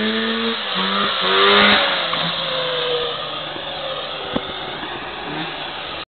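Snowmobile engine in a Cub Cadet lawn tractor running hard at high revs, loudest in the first two seconds, then fading away over the rest, with one sharp click about four and a half seconds in. By the owner's account its carburettor is not yet jetted right.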